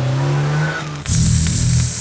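A car engine running as it pulls away, with music under it; about a second in it cuts to a steady electric hiss and hum from a sparking repair tool held against a robot's throat.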